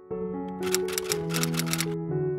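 Soft piano intro music with a rapid run of clicking sound effects over it, starting about half a second in and lasting about a second and a half.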